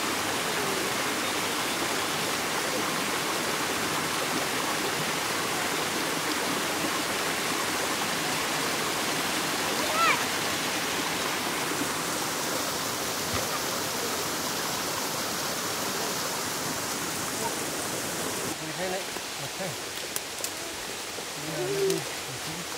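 Steady rushing hiss of water, with faint voices under it. A brief call rings out about ten seconds in, and near the end the hiss drops back and voices come through more clearly.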